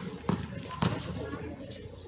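A basketball being dribbled on an outdoor hard court: a few sharp bounces about half a second apart.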